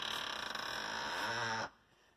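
A man's voice holding one long, drawn-out wordless sound, which stops about one and a half seconds in.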